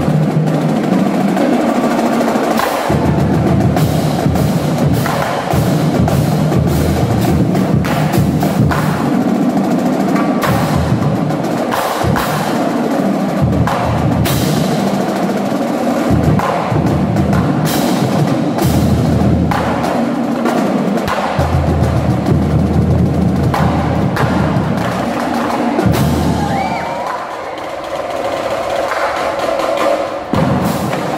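Marching drumline playing together: snare drums, tenor drums and bass drums in dense rhythmic patterns with rolls and sharp clicks over low bass-drum notes. It drops quieter for a couple of seconds near the end.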